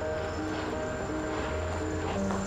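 Background music: a slow melody of held notes over a low sustained bass.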